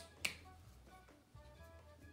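Two sharp clicks about a quarter second apart right at the start, from a highlighter pen being handled, then faint background music with scattered held notes.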